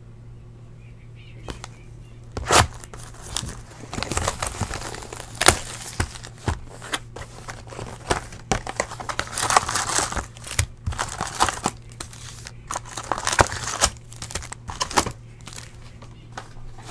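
Plastic shrink wrap being torn and crumpled off a sealed trading-card box, in irregular crinkling, crackling bursts that begin about two seconds in and go on in fits.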